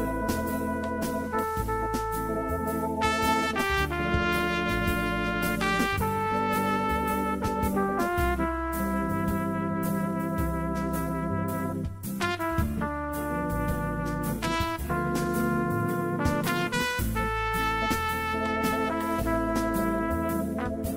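Jazz tune played on a Korg Pa600 arranger keyboard: a lead melody in long held notes over a moving bass line and a regular beat.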